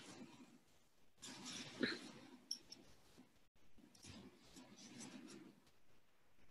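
Faint sniffling and breathing into a paper tissue held over the nose, in two short bouts about a second and four seconds in.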